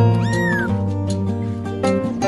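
A kitten gives one short, high meow that rises and then falls in pitch, over background music with plucked guitar.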